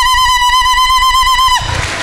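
A woman's high-pitched cry into a microphone, held on one note with a slight waver, breaking off about one and a half seconds in.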